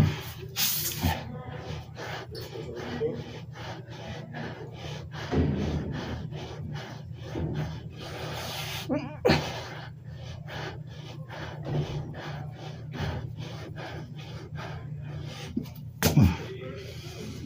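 A man breathing hard and gasping through a set of push-ups, with short, sharp blasts of breath, over a steady low hum.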